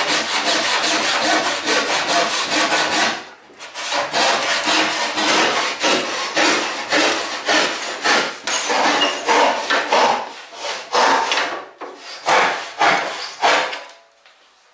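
Hand rip saw cutting lengthwise through a wooden board, running in a shallow kerf cut beforehand with a kerfing plane. Quick strokes at first, a short pause about three seconds in, then slower, evenly spaced strokes that stop near the end as the cut finishes.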